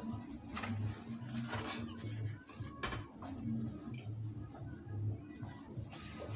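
Soft rustling and handling of fabric as a folded, cut piece of cloth is opened out on a table, with a few faint brushes and taps, over a low background hum.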